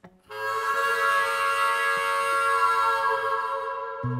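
Harmonica playing one long held chord, beginning about a third of a second in and sustained for roughly three and a half seconds, easing off slightly near the end.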